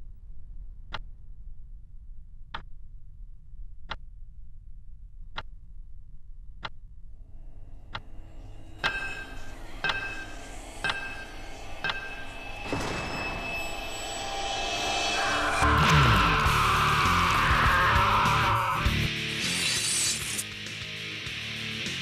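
A clock ticking slowly, about one tick every second and a half, over a low hum. About nine seconds in, soundtrack music enters and builds to a loud, dense passage with crashes over the last several seconds.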